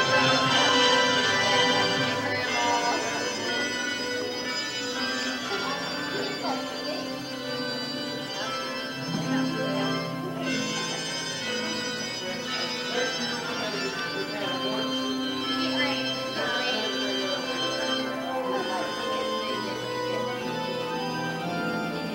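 Recorded recessional music playing from a CD, long held notes and chords sounding steadily, with a murmur of voices underneath.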